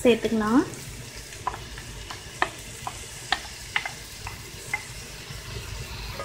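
Shredded Brussels sprouts frying in a cast-iron skillet with a soft, steady sizzle, stirred with a wooden spatula that gives scattered light clicks and scrapes against the pan.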